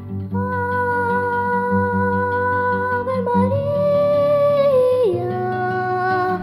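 Song with a long wordless 'aah' vocalise held on one note, stepping up about three and a half seconds in and down again about five seconds in, over steady instrumental accompaniment.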